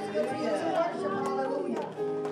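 Several worship singers' voices over microphones and the hall PA, overlapping as they sing and call out, with held keyboard tones beneath.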